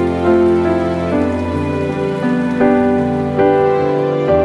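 Rain falling steadily under soft background music of slow, held notes.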